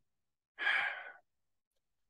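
A man's sigh: one audible breath out, about half a second long, starting about half a second in and fading away. It is the sigh of someone moved by what he has just read.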